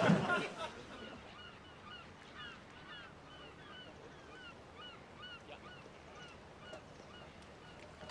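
Birds calling faintly in the distance, a quick series of short honking calls at about two a second, like a flock of geese.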